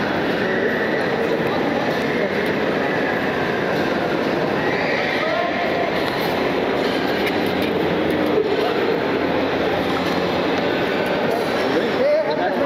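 Steady dense background noise of a busy terminal hall, with indistinct voices in it.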